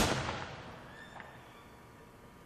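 A single loud, sharp bang right at the start, its echo dying away in a large hall over about a second, then quiet. It imitates the shotgun blast just described as sounding like an explosion.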